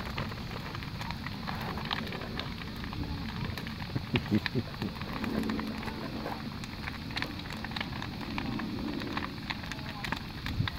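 Large bonfire burning with a steady rushing sound and frequent sharp crackles and pops.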